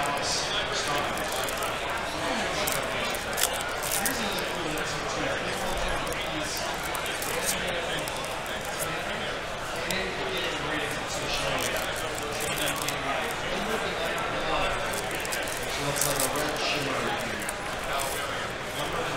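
Steady chatter of many voices in a large hall, with light clicks and rustles of trading cards being handled and stacked.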